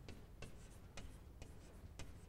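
Chalk writing on a blackboard: faint scratching broken by several short sharp taps as the strokes are made.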